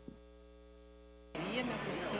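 Steady electrical mains hum, several faint even tones over near silence. About a second and a half in it cuts off, and a steady hiss of outdoor background noise starts abruptly.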